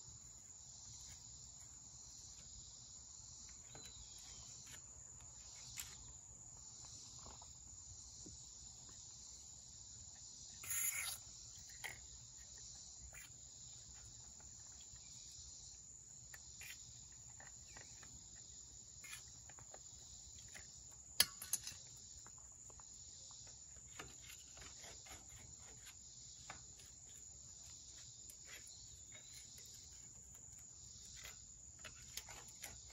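Steady chirring of crickets and other insects, with scattered light clicks and scrapes of a screwdriver working in bolt holes in a cast tractor housing. About 11 seconds in comes one short hiss from an aerosol spray can, and around 21 seconds a couple of sharp clicks.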